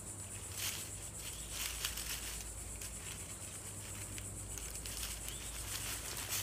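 Faint, scattered rustles and light handling noises as paracord is worked loose from a poncho corner tie-off by hand, over a quiet, steady outdoor background.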